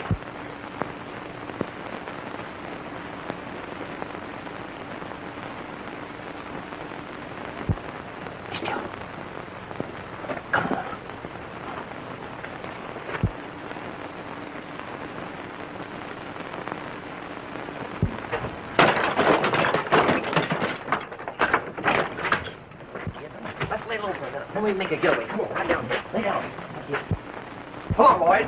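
Old optical film soundtrack hiss with a few isolated sharp cracks, then from about 19 seconds in a dense, irregular run of loud cracks mixed with shouting voices, as in a gunfight.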